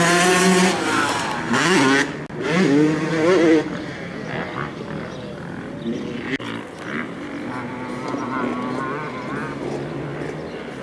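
Dirt bike engines running at the track, revving with rising and falling pitch for the first few seconds, then fading to a fainter background hum. A few light clicks come about six to seven seconds in.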